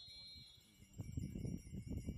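A referee's whistle sounded in one long, steady blast of several high tones, the signal that the free kick may be taken. A low rumble comes in about halfway through.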